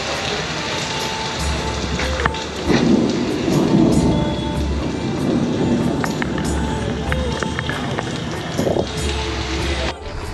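Background music with a steady, repeating bass pattern over heavy rain falling on paving, with a louder low rumble about three seconds in.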